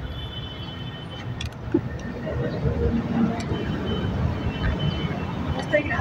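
Low, steady rumble of city traffic with faint, indistinct voices of people nearby.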